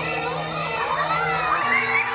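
A crowd of children shouting and cheering, many high voices at once, over a song with steady held bass notes that change pitch near the end.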